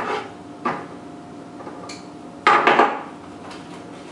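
Knocks and rustles of florist's tools and a spool of wire being handled on a wooden table, with the loudest clatter about two and a half seconds in.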